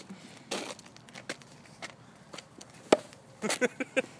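Handling noise from a phone camera being moved about: scattered rustles and light knocks, with one sharp click about three seconds in.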